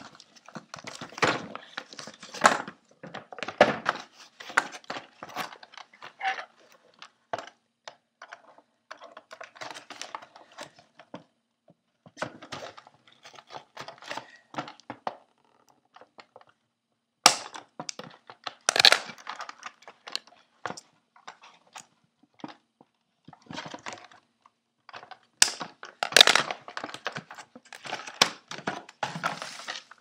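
Cardboard and plastic toy packaging being handled and opened by hand: irregular rustling, tearing and scraping with light knocks, and a few louder sharp cracks in the second half.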